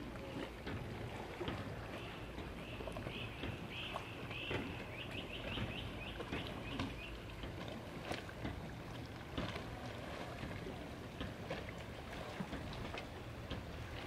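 Faint lakeside ambience: a steady low wash of water and air with scattered small clicks, and a bird calling a run of quick, high repeated notes that speed up from about two and a half to seven seconds in.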